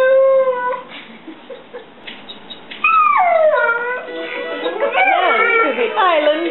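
Alaskan Malamute howling along to a music toy's tune: a long howl falling in pitch ends just under a second in, a second howl slides down about three seconds in, then wavering howls follow, with the tune playing underneath.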